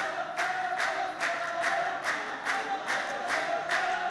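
The clapping row of men at a Saudi muhawara (sung poetry duel) claps in unison, about two and a half claps a second. Over the claps they chant together on a held note.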